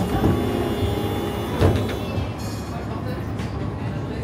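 Tatra T3 tram's folding passenger doors closing: a knock right at the start and a louder sharp thud about a second and a half in as the leaves shut, over the steady rumble of the tram interior.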